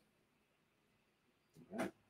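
Near silence for most of the moment, then a man's voice begins to speak near the end.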